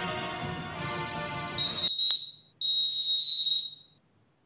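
Band music that stops about two seconds in, overlapped and followed by two long, shrill whistle blasts on one steady high pitch, the second a little longer than the first.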